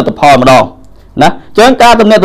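Speech only: a man narrating in Khmer, with a short pause in the middle.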